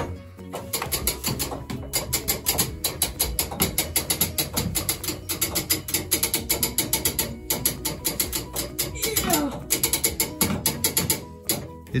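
Tower clock movement being wound by hand crank, its ratchet pawl clicking rapidly and evenly, several clicks a second, as the weight is wound up. The clicking breaks off briefly a little past halfway and again near the end.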